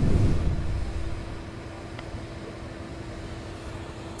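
Steady outdoor background noise picked up by a live field microphone: a low rumble and hiss with a faint steady hum, louder for the first second and then even.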